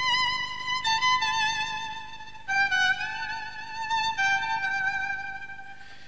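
Solo violin playing a slow melody of long held notes with vibrato, moving to a new note about every second.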